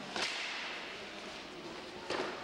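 A single sharp slap of a floor hockey shot just after the start, echoing through the hall over steady background crowd noise.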